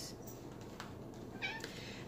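A faint, brief high-pitched call or squeak about one and a half seconds in, over low steady room noise.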